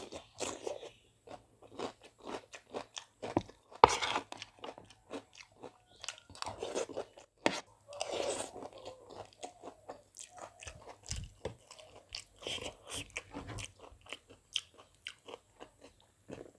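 Eating sounds: crisp crunching bites and chewing of a cucumber slice, then mouthfuls of spicy noodles, heard as a steady run of short crunches and wet mouth clicks.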